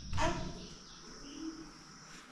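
A sudden dull thump just after the start, then a dove cooing, over a steady high-pitched whine.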